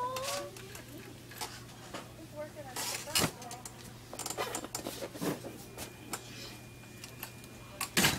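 Scattered knocks and rattles from a wire shopping cart and a plastic ball being handled, the sharpest knock about three seconds in, over a low steady hum and faint voices.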